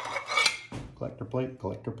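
Two decorative picture plates clinking and knocking together as they are lifted and handled. A man's voice starts in the second half.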